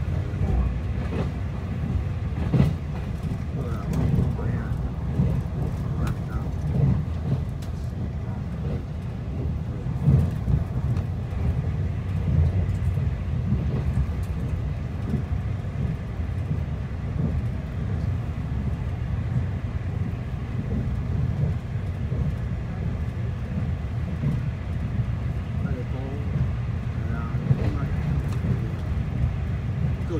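Interior running noise of a TEMU2000 Puyuma tilting electric multiple unit at speed, heard inside the carriage: a steady low rumble with a few sharp knocks from the wheels and track.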